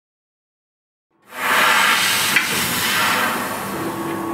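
1000 W fiber laser tube cutter at work on 1 mm stainless square tube: a steady hiss that starts abruptly about a second in, with one sharp click about halfway through.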